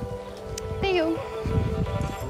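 Background song playing: sustained chords under a sung vocal line that slides down in pitch about a second in.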